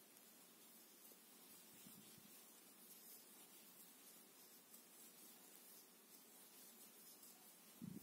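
Near silence: faint room tone with a steady hiss, and a brief soft low bump near the end.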